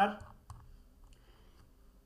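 A computer mouse click about half a second in, then a fainter click, against quiet room tone.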